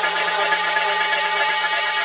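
Build-up section of a house music remix: held synth chords with the bass cut out, under a steady wash of white-noise hiss filling the high end.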